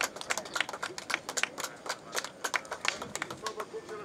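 A small group of people clapping by hand: sharp, irregular claps several a second that thin out near the end, with voices faintly underneath.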